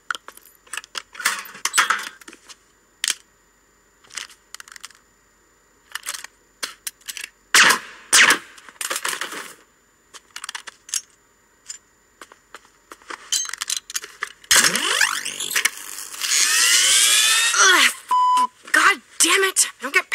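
Cartoon sound effects: a run of short clicks and knocks, then a swooping sci-fi zap with rising whooshes past the middle, and a brief steady beep near the end.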